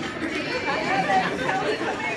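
A crowd of people talking and calling out at once, with several voices overlapping and a few short raised calls.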